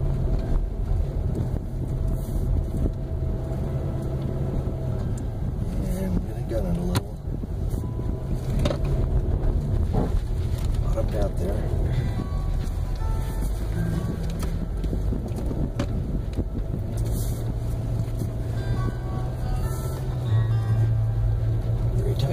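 Car engine and road noise heard from inside the cabin as the car climbs a steep, narrow hill road: a steady low drone whose engine note shifts pitch a few times and grows louder near the end, with occasional small knocks from the road surface.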